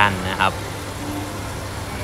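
A man speaking Thai briefly, then a steady low hum with no clear source.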